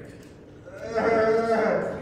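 A man's voice, one drawn-out, wavering phrase of about a second starting a little before the middle.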